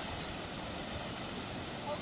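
Steady rush of ocean surf breaking on a rocky shore.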